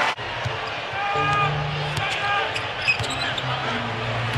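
Basketball being dribbled on a hardwood arena court, under a background of arena crowd noise.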